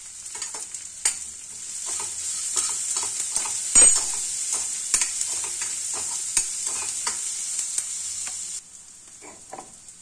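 Chopped onion and ginger-garlic paste sizzling in hot oil in a steel kadhai while a spatula stirs and scrapes, with frequent clicks of metal on the pan and one louder knock about four seconds in. The sizzle drops away sharply near the end.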